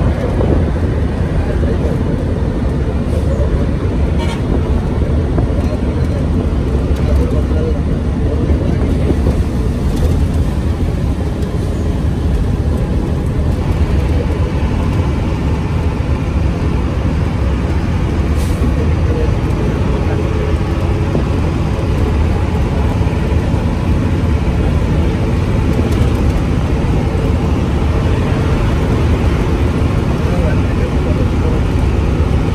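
Steady low road and engine rumble heard inside the cabin of a vehicle cruising along a highway.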